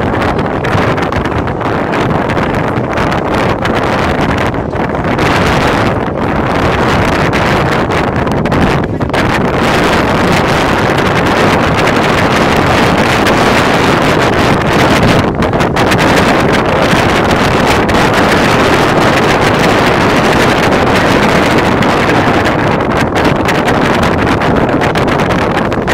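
Wind buffeting the microphone: a loud, steady rushing noise that runs on without a break.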